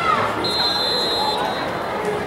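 A referee's whistle blown once, a high steady shrill note lasting just under a second, starting about half a second in.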